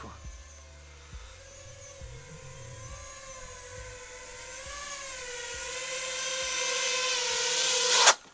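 Five-inch FPV quadcopter (iFlight Nazgul) flying in to land: its motors and propellers make a whine whose pitch wavers, growing steadily louder as it closes in, then cutting off suddenly at the end.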